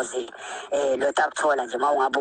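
Speech: a voice talking, with a brief pause just after the start.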